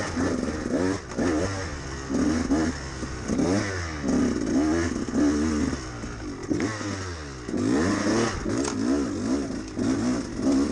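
2013 KTM 200 XC-W two-stroke single-cylinder engine revving hard and dropping back over and over under quick throttle changes while the bike is ridden. It eases off briefly about two-thirds of the way through, then pulls again.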